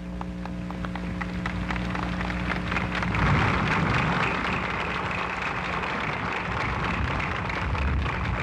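Large crowd applauding: scattered claps over a steady hum from the old recording, swelling into full applause about three seconds in.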